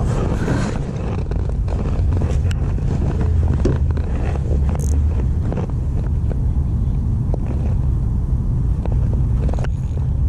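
Steady low outdoor rumble, with a few light clicks and ticks from handling a spinning rod, reel and line.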